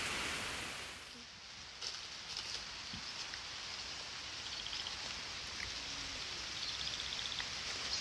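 Faint rural outdoor ambience: a steady hiss that drops away about a second in, then quiet background noise with a few small clicks and two short runs of fast, high-pitched ticking in the second half.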